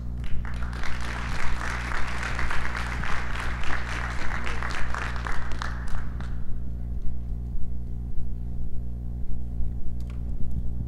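Audience applauding, many hands clapping for about six seconds before dying away.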